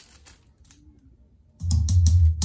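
A few faint clicks, then about one and a half seconds in music starts abruptly from a Sony MHC-GPX7 mini hi-fi system, loud and with heavy bass.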